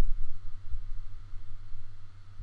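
Low steady hum with a faint hiss: background noise of the voice recording, with no other sound.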